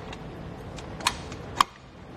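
Steel tilt pin being pushed back into the pivot at the base of a hitch-mounted bike rack, with light metal rattles and two sharp metallic clicks about half a second apart, the second louder.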